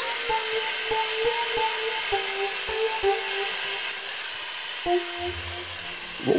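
Cordless stick vacuum spinning up with a quick rising whine, then running steadily with a high-pitched whine as it sucks dust out of an amplifier's chassis.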